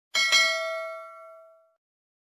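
Notification-bell 'ding' sound effect of a subscribe-button animation: a bright chime struck once with a sharp attack, ringing and fading out over about a second and a half.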